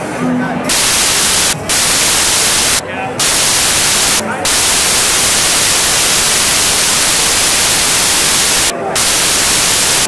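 Loud, even static hiss that drowns out the street crowd's voices. It breaks off for a moment four times, and chatter shows through each gap.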